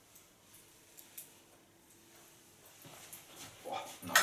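Mostly quiet room with a few faint, short clicks and rustles as metal hair clips are taken out of dried pin curls.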